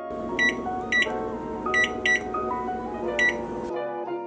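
Microwave oven keypad beeping five times, short electronic beeps at uneven intervals, as a 45-minute timer is keyed in.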